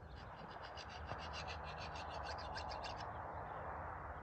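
An animal's rapid pulsed call, about eight even pulses a second, stopping about three seconds in, over a steady faint hiss.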